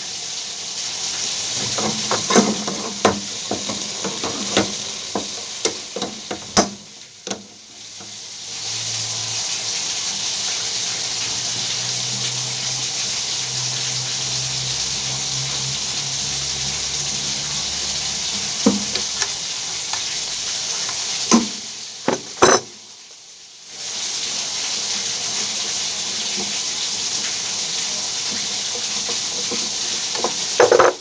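Scattered clicks and taps of metal plumbing fittings being handled and turned, over a steady hiss that drops out briefly twice.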